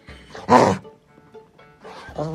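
A golden retriever gives one short, loud play growl about half a second in, over background music.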